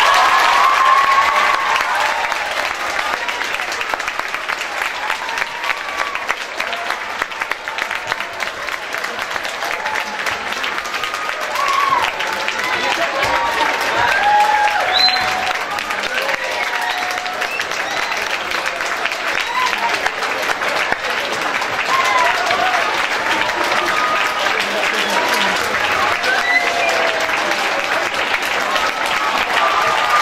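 A large audience of school pupils clapping in sustained applause, with voices calling out and cheering over it.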